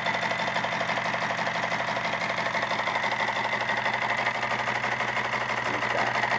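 Homemade Stirling engine built from drink and food cans, running fast on alcohol-lamp heat: a rapid, even mechanical clatter with a steady high whine.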